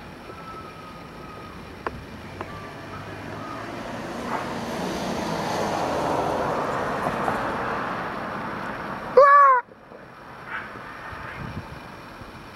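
A passing vehicle, its noise swelling over several seconds and then fading. Near the end comes one short, loud call that falls in pitch.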